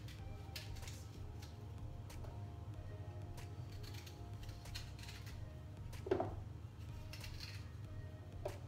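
Faint background music over a low steady hum, with scattered small clicks and scrapes of a small knife cutting the seeded core out of a quince by hand. One slightly louder knock comes about six seconds in.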